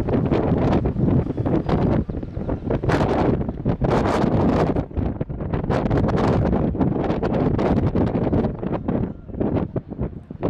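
Wind buffeting the microphone on an exposed hilltop, rising and falling in irregular gusts.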